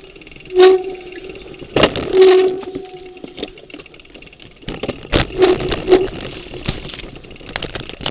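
Mountain bike jolting over rough dirt singletrack: sharp knocks and rattles from the bike and the camera mount over bumps, with a few short squeals from the brakes.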